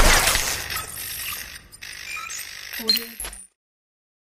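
Glitchy logo-animation sound effects: a loud hit at the start that fades away, then scattered mechanical clicks and short electronic tones. A final cluster of clicks comes just before the sound cuts off suddenly about three and a half seconds in.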